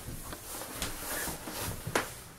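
Light handling noise: low rustling and a few small knocks, with one sharp, loud click near the end.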